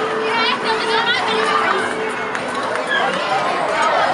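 High-pitched children's voices and chatter over a busy arcade hubbub, with a steady electronic tone held through about the first half.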